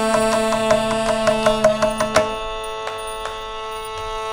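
Live Carnatic music: a held note over a steady drone, with quick mridangam strokes, closing on a sharp stroke about two seconds in. After that the music goes softer, with only the drone and a few light strokes.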